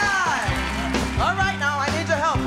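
Live band music starting up, with bass notes and drum hits coming in about half a second in, under a woman's voice at the microphone.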